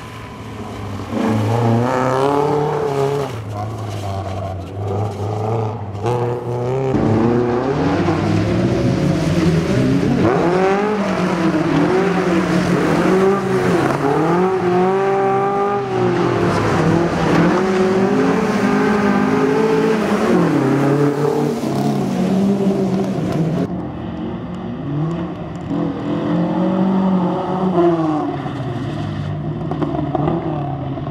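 BMW 2002 rally car's four-cylinder engine revving hard as it is driven round a tight course, its pitch repeatedly climbing and dropping with gear changes and lifts off the throttle.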